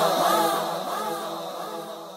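Naat (Islamic devotional song): voices singing over a steady hummed drone, fading out.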